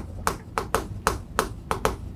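Chalk tapping and scraping on a chalkboard as a number with many zeros is written out: a quick run of sharp clicks, about five or six a second.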